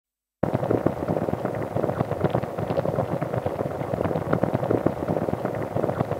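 Crackling and popping of a wood fire: a dense, irregular run of small snaps that starts suddenly about half a second in.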